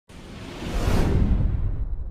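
Whoosh sound effect for an animated logo intro, swelling to its loudest about a second in over a deep rumble; the hiss fades near the end while the rumble lingers.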